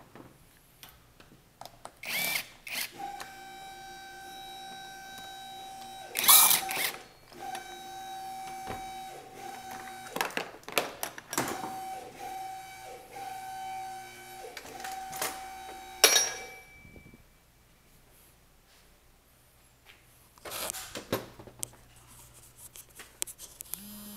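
A cordless power tool with an Allen socket running in several short bursts of steady whine on the roof-rack screws, stopping and starting again, with loud knocks from handling the tool and rack in between. Near the end come a few seconds of rustling and bumping.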